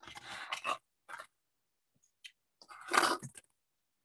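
Turning knob of a homemade paper-and-plastic candy dispenser working: irregular scraping and rattling of small hard candies, with a few short clicks and a louder rattle near the end as candy dispenses.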